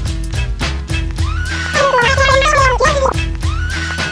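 Background music with a steady beat and heavy bass, a repeated tone that slides up and holds, and a high wavering melodic line that slides down in pitch around the middle.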